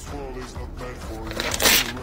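A sheet of paper torn in half: one short ripping sound about one and a half seconds in, over quiet background music.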